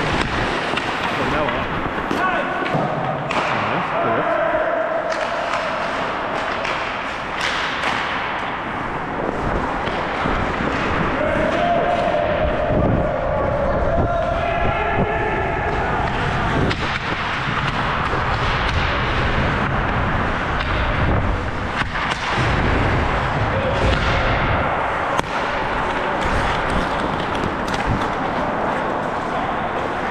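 Ice hockey play heard from a helmet-mounted camera while skating: a steady rush of air and skating noise on the microphone, broken by occasional knocks from sticks and puck. Players shout now and then, about four seconds in and again for a few seconds near the middle.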